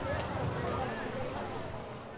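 Indistinct voices of an outdoor audience talking, with a few light clicks or taps, fading out near the end.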